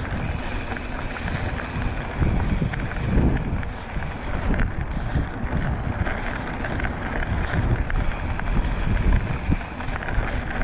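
Hardtail mountain bike rolling along a dry dirt singletrack, its tyres hissing on the dirt with small rattles, while wind buffets the handlebar camera's microphone in uneven gusts.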